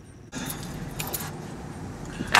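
Metallic jingling and clinking over a steady rush of noise that starts suddenly about a third of a second in.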